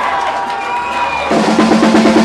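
Live punk band starting a song: after a brief lull, drums and electric guitars come in loudly a little past halfway, with rapid drum hits.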